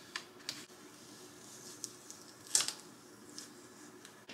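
Fingertips picking and peeling stencil vinyl off a painted wooden plaque: a few faint, short scratches and crinkles, the loudest about two and a half seconds in.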